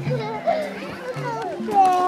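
High children's voices over background music with a steady, stepping bass line.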